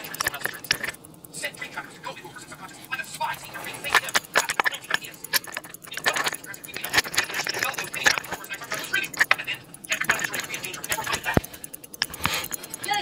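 Repeated small metallic clicks and light rattles as a Valjoux 7730 chronograph movement is handled and turned over in a movement holder.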